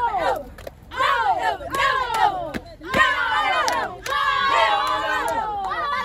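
A group of girls shouting a cheer chant together in short rhythmic calls, breaking into a longer, drawn-out group yell about three seconds in.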